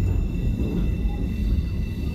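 Railway carriage running slowly over the track, heard from inside: a steady low rumble of wheels on rails.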